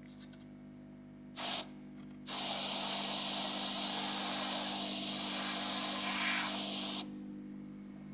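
GAAHLERI Mobius airbrush spraying gloss black lacquer at 0.12 MPa: a short burst of hiss about a second and a half in, then a steady hiss for about five seconds that cuts off sharply near the end.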